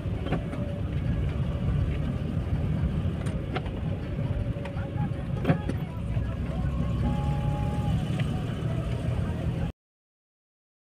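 Steady low rumble of a car driving, heard from inside the cabin, with a few sharp clicks and knocks. The sound cuts off suddenly just before the end.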